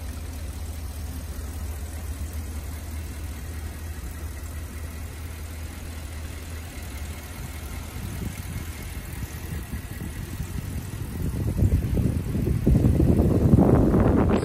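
A Ford F-250's 6.2-litre V8 idling steadily, as a low hum, on the bi-fuel system's compressed natural gas. Over the last few seconds a louder rush of rough noise comes in over it.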